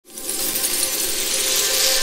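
A dense shower of tiny glassy pieces clinking and tinkling, like crystals or coins pouring, as a sound effect for pouring diamonds. It starts abruptly from silence and keeps on as a bright, thick glitter over faint steady tones.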